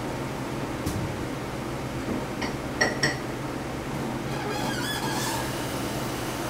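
Light kitchen clatter over a steady low hum: a few short ringing clinks, like glass or dishware being set down, about halfway through, and a brief wavering ring near the end.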